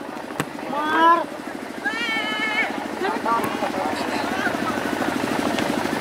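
Scattered shouts and calls from people around a football pitch, one drawn out with a wavering pitch, over a steady, fast-pulsing low mechanical hum.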